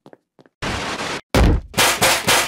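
Loud, harsh metallic clanging that begins about halfway through, with a hard hit near the end: a metal pan or lid being banged as a wake-up racket. It is preceded by a few faint footsteps.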